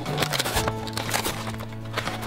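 Clear plastic blister packaging crinkling and crackling as it is pulled apart by hand, over steady background music.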